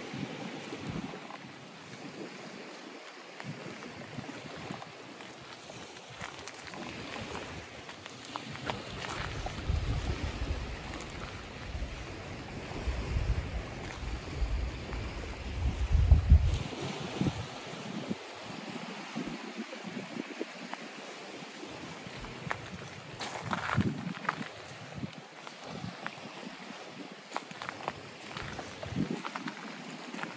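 Wind blowing across the microphone over a steady wash of gentle surf. Gusts buffet the microphone with a low rumble through the middle of the stretch.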